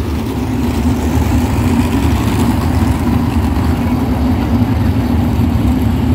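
A field of winged 305 sprint cars' V8 engines running together in a steady, loud drone as the pack rolls around the dirt oval at pace speed before the start.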